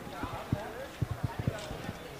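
Footsteps of someone walking on a paved path, heard as dull low thumps a few times a second, with indistinct voices of people nearby.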